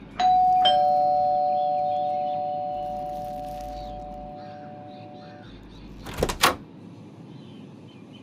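Electronic two-tone doorbell chime, a higher note then a lower one (ding-dong), the two notes ringing together and fading out over about five seconds. About six seconds in come two sharp clicks.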